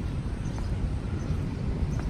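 Steady low outdoor rumble with a light hiss above it, without distinct events: the ambient background of an open city square.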